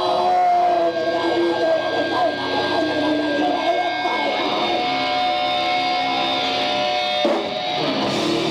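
Live metal band playing loud distorted electric guitars over drums, heard through a camcorder microphone in the crowd. Long held guitar notes ring over the riff, and the sound changes suddenly about seven seconds in.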